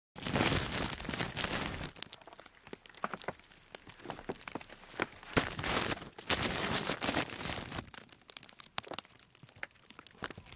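Clear plastic sheeting crinkling and rustling close to the microphone as it is handled, full of sharp crackles, loudest at the start and again about five to seven seconds in.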